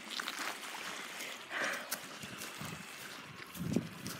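Small waves lapping on a pebbly lakeshore, a steady soft wash with a few low thumps near the end.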